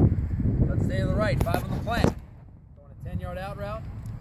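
Indistinct voices talking over wind rumbling on the microphone, with a few sharp clicks about one and a half to two seconds in and a quieter spell just after the middle.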